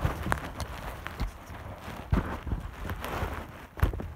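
Handling noise: rustling with a few soft, irregular knocks as a phone camera is moved about.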